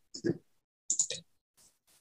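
Computer mouse clicking a few times in short groups, with fainter ticks near the end.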